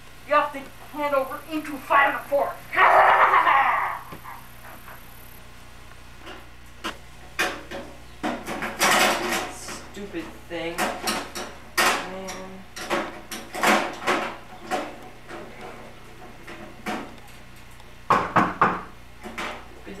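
A few seconds of unclear speech and a loud noisy outburst, then scattered knocks and clatters of objects being picked up and moved about on garage shelves.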